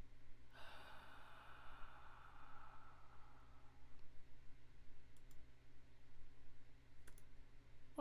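A woman's long sigh, a breathy exhale lasting about three seconds that starts half a second in. Later come a couple of faint computer-mouse clicks, the last one shortly before the end.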